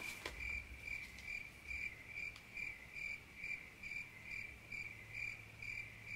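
A high chirp of one steady pitch, repeating evenly about twice a second, over a faint low hum.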